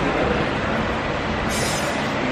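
Steady, fairly loud rumbling background noise with no single clear source.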